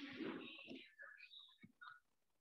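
Faint, indistinct speech in short broken bursts, low enough to sound whispered or murmured.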